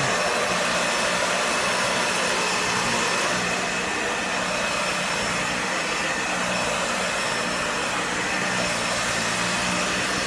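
Dyson Ball upright vacuum cleaner running steadily, a constant rush of air with a thin high whine from the motor, as it is pushed over a floor mat.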